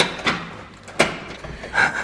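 Key being turned in a door lock while a brass doorknob is twisted and pulled, with sharp metallic clicks and clunks from the lock and latch at the start, about a second in and near the end, as the lock is fumbled with.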